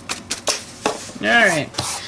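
A folded sheet of paper crinkling and rustling in the hands, with a few sharp little taps. A little over a second in comes a brief wordless vocal sound whose pitch dips and rises.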